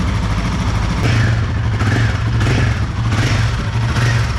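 Royal Enfield Himalayan 450's single-cylinder engine running steadily, loud and close.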